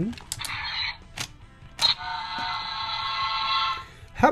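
A few sharp plastic clicks from a Bandai ToQger toy train and base being handled, then the toy's electronic sound effect: a steady multi-pitched electronic tone held for about two seconds and cut off just before speech resumes.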